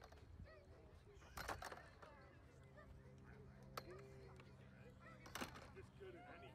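Near silence: faint distant voices, a few sharp clacks at about one and a half, four and five and a half seconds in, and a low steady hum that starts about halfway through.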